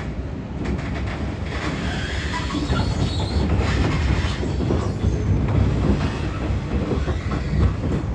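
Running noise heard from inside a 415-series electric multiple unit: a heavy low rumble of wheels on rail with clatter over the track. It grows louder over the first few seconds as the train picks up speed, then holds steady.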